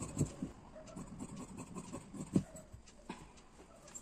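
Tailor's scissors cutting through blouse fabric on a table: a series of irregular short snips and rustles, the loudest about a quarter second in and again about halfway.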